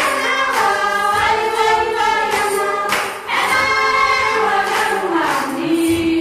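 A group of voices singing together in chorus, in long held phrases with a short break about halfway through.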